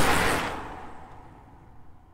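A rushing whoosh, loudest at the start and fading away over the next second and a half.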